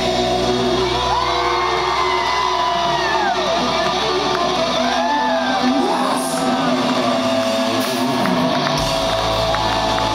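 Hard rock band playing live in a large hall: sung vocals over electric guitar and drums, with shouts from the crowd. The deep bass thins out for a few seconds mid-way and comes back in strongly near the end.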